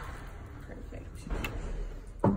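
Electric awning motor running steadily as a fifth-wheel trailer's power awning extends while the switch is held, with a short louder noise about halfway through.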